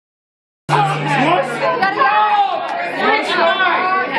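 Crowd chatter in a bar: many voices talking over each other, starting abruptly a little under a second in.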